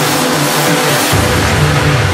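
Loud electronic dance music from a DJ mix. The deep bass is out at first and comes back in heavily about a second in.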